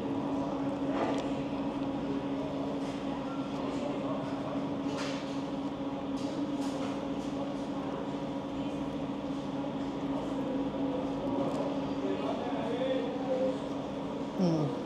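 Dining-room background of a restaurant: a steady low hum with a faint murmur of voices, and soft chewing of a burger close to the microphone.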